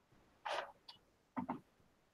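A few faint, short sounds: a soft rustle about half a second in, then a small click and a quick pair of clicks, as a computer mouse is clicked to adjust software settings.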